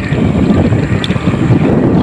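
Loud, steady wind buffeting the camera microphone while riding along a road.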